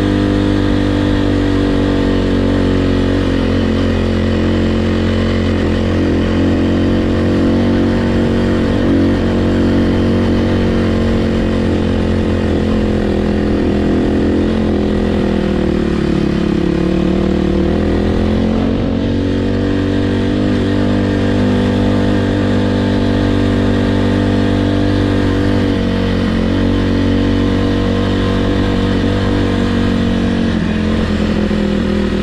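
Kawasaki KLX300R's single-cylinder four-stroke engine running steadily under way at riding revs. About halfway through, the revs dip and then climb back.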